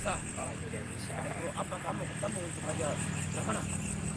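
Faint, indistinct voices talking over a steady low background hum.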